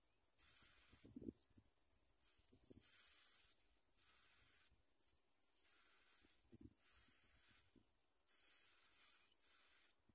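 Bar-winged prinia nestlings begging: a run of faint, high, hissing calls, each about half a second long and coming about once a second, some with a thin sliding whistle inside.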